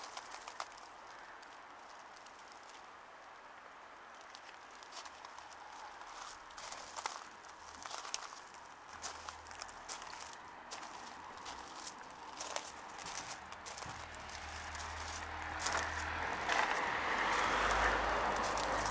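Footsteps crunching on a gravel path, with scattered light clicks, while road traffic builds in the background: a low rumble that grows louder over the last few seconds.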